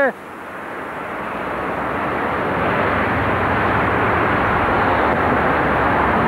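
A steady outdoor roar with no clear tone, swelling over the first couple of seconds and then holding steady.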